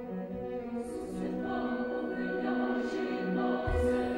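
Women's opera chorus singing in French with orchestral accompaniment.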